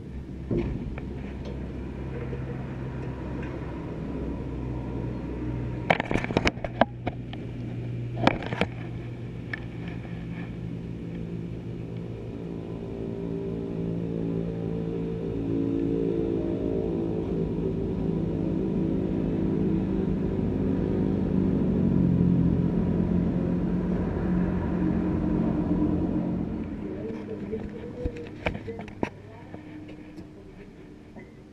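A steady motor hum that grows louder through the middle and dies down near the end. A few sharp clanks come around six and eight seconds in.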